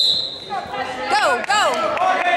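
A referee's whistle blown once, short and shrill, starting a wrestling bout, followed about a second later by two shouts from spectators that fall sharply in pitch, over background chatter.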